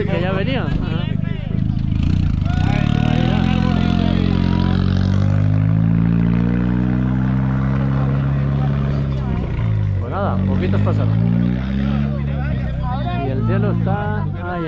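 Hillclimb race car engine running hard as the car drives through the curve close by. The note shifts in pitch, dips briefly about ten seconds in, then picks up again before fading near the end.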